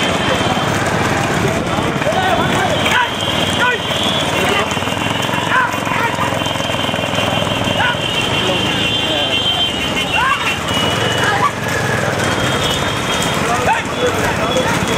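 Men shouting and whooping over the steady din of motorcycle engines, with the hooves of galloping racing bullocks on the asphalt road.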